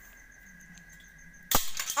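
Quiet background, then a single sharp knock about one and a half seconds in, followed by a short burst of rubbing and rustling: handling noise as the recording phone is bumped and swung around.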